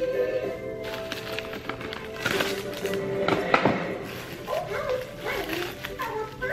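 Background music, with plastic cling wrap crinkling and rustling as it is pulled and wrapped around a small container, loudest in the middle.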